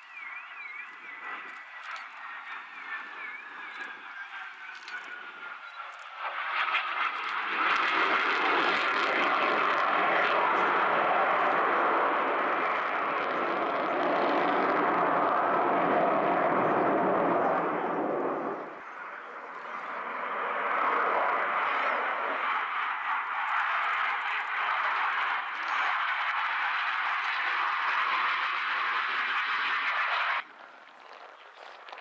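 Su-27UB jet fighter's twin AL-31F turbofan engines in a flying display: a faint falling whine at first, then loud jet noise from about six seconds in, easing briefly near nineteen seconds and building again until it cuts off abruptly at the end.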